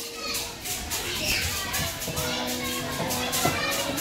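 Children's voices and play noise, with background music of held notes underneath.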